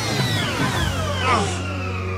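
Motorcycle engine whine falling steadily in pitch as the cycle slows and pulls up, over background music's sustained low notes.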